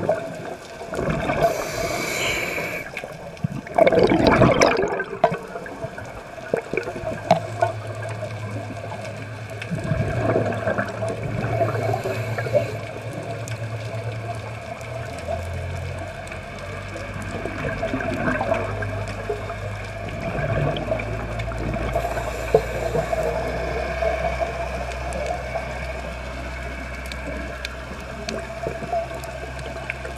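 Scuba regulator breathing heard underwater: exhaled bubbles gurgle and gush up every few seconds, the loudest about four seconds in. A steady low drone runs beneath from about seven seconds in.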